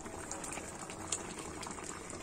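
A pan of curry simmering on a gas stove: steady bubbling with a few small pops as bubbles burst.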